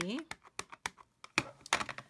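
Clear acrylic stamp block tapped against a plastic-cased ink pad to ink a photopolymer stamp: an uneven run of light plastic clicks, the loudest about one and a half seconds in.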